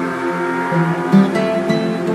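Calm instrumental music led by plucked acoustic guitar, with sustained notes ringing over one another.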